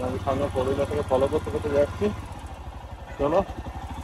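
Motorcycle engine idling steadily with an even, low pulsing rumble, and voices talking over it in the first two seconds and briefly again near the end.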